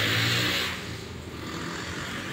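A motor vehicle passing by, its noise fading away about a second in, leaving faint traffic background.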